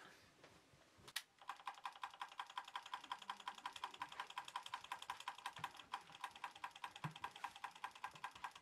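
Sangamo Weston S317.1.22 time switch's synchronous motor mechanism, just powered up, chattering with a faint rapid clicking of about eight clicks a second that starts about a second in. The mechanism is jammed and not running as it should.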